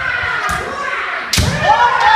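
Kendo bout: bamboo shinai strikes and stamping feet on a wooden dojo floor, a sharp crack about half a second in and a louder one past the middle, followed by a long rising-and-falling kiai shout. The second strike draws a referee's flag, marking it as a scoring hit.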